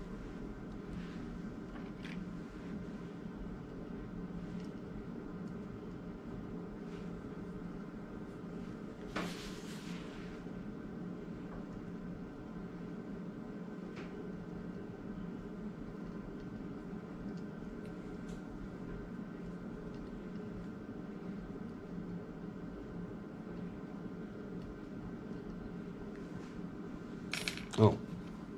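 Light metallic clicks and clinks as small screws, a hex key and the duplicator's follower parts are handled and fitted, over a steady low hum in the shop. There is a brief burst of noise about nine seconds in and a sharper click near the end.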